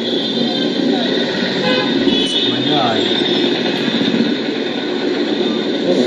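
Busy city street traffic: motorbike and bus engines running, a horn tooting, and voices of people passing.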